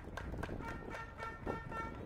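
A man's voice at a podium, heard faintly and turned well down, with scattered sharp clicks.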